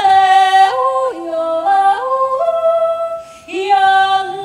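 A woman yodeling a cappella, her voice stepping up and down between held notes, with a brief break about three seconds in.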